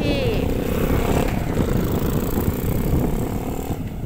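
Wind buffeting the microphone in an irregular low rumble, over a faint steady engine hum that stops just before the end.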